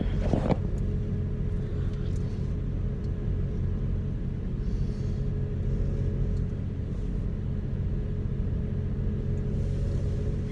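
Steady low engine drone with an even hum, heard from inside a car's cabin. It does not change in pitch or level.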